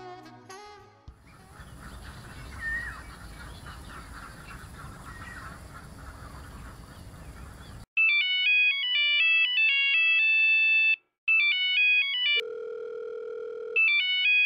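Mobile phone ringtone: a loud electronic melody of quick stepped beeps that starts suddenly about eight seconds in, breaks off briefly and starts again, with a steady held tone near the end. Before it come the last notes of music and a stretch of steady low background noise.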